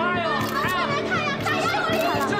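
Raised voices in a crowd argument over a steady background music score.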